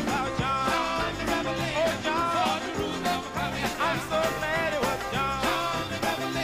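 A live band playing a song: a steady drum beat and bass under a lead line of bending, wavering notes.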